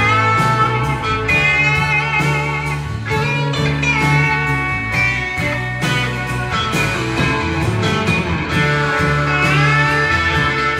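Live rock band playing an instrumental passage: a Telecaster-style electric guitar takes the lead with bent, gliding notes over bass and drums.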